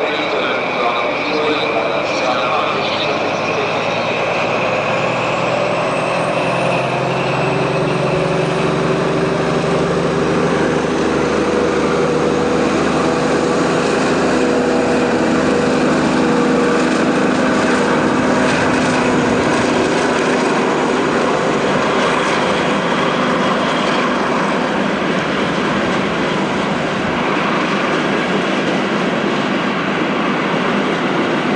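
Deutsche Bundesbahn diesel locomotive engine running under load as it hauls a train of coaches through the station. Its note climbs gradually over the first half, then holds steady, over the rumble of the train on the rails.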